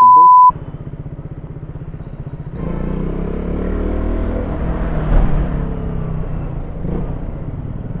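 A short censor bleep, then a KTM Duke 200's single-cylinder engine pulsing evenly at low revs; about two and a half seconds in, the engine and wind noise grow louder as the bike picks up speed.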